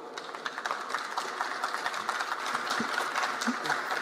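Audience applauding steadily: many hands clapping.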